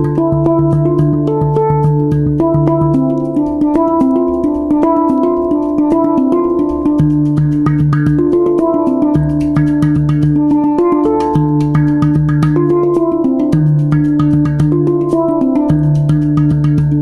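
Hang, a Swiss-made steel handpan, played with the fingers: a quick, flowing run of struck notes that ring on and overlap, with a deep low note sounding again and again beneath them.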